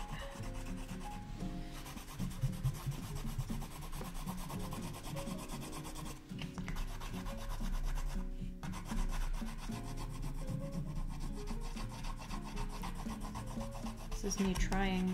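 Colored pencil scratching across sketchbook paper in quick back-and-forth shading strokes, a steady rapid rasp.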